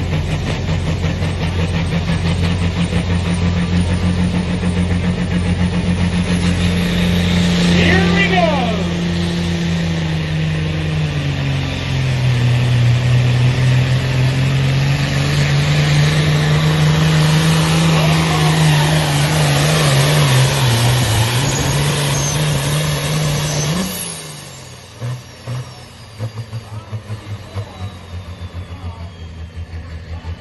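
Modified Ford farm tractor's diesel engine running flat out under load as it pulls a weight-transfer sled, its pitch sagging as the sled bogs it down about twelve seconds in, recovering, then dropping again near twenty seconds. The engine note cuts off sharply about 24 seconds in, leaving a quieter, pulsing sound.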